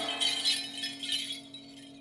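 Jingling, shimmering bells and cymbals of a Korean shamanic gut ritual, dying away over about a second and a half over a faint steady low tone.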